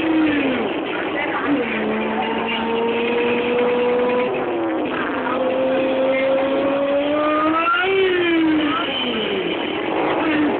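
Motorcycle engine under held throttle. The revs drop in the first second, then hold steady with a slow climb for about six seconds, as on a wheelie run. Near the end they rise briefly and then fall away.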